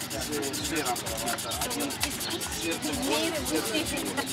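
Hand rubbing or sanding of a small handmade wobbler lure against an abrasive sheet, a continuous scratchy rubbing.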